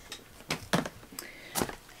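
A few light knocks and clicks of a plastic wipe warmer being handled and set down.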